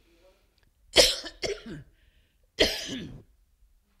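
A woman coughing: two coughing bouts about a second and a half apart, the first with a quick second hack, from something catching in her throat mid-sermon.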